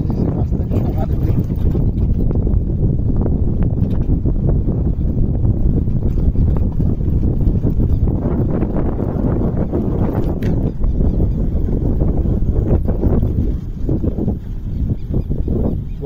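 Steady low rumble of wind buffeting the microphone on a moving motorcycle, easing slightly near the end.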